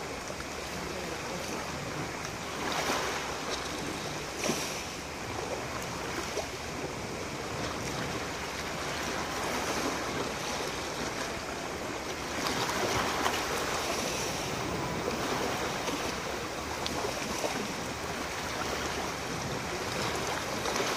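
Small sea waves washing onto a pebble shore, a continuous wash that swells and eases every few seconds.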